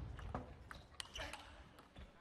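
Celluloid-style table tennis ball clicking and bouncing in a large hall: the echo of a hard hit fades at the start, then a handful of light irregular taps as the ball bounces away. A brief voice is heard a little over a second in.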